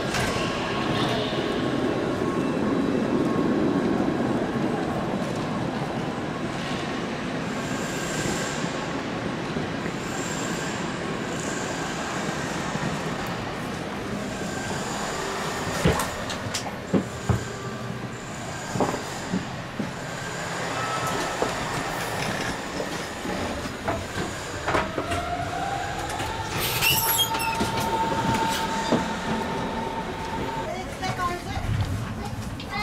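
Train noise in a railway station: a steady rumble with thin high squeals on and off and a few sharp knocks in the middle. Near the end an electric whine rises in pitch and then holds steady.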